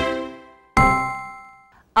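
A short musical jingle: a chord dies away, then a single bell-like ding about three-quarters of a second in rings out and fades.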